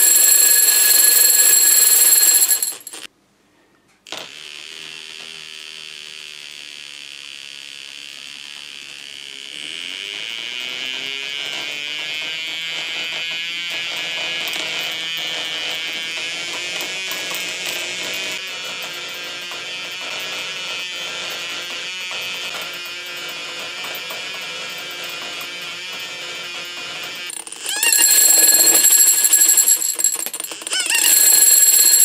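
Magnetised steel shot spinning fast inside a glass, driven by an electromagnet, giving a loud, steady, high ringing buzz. After a brief silence a few seconds in, a quieter whine rises in pitch as the spinning speeds up, then holds steady. The loud ringing returns near the end.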